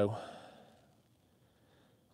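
A man's spoken word trailing into a short breathy sigh that fades within about half a second, then near silence.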